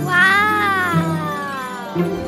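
One long, high vocal call from a cartoon character that rises briefly, then slides down in pitch for about a second and a half, over background music.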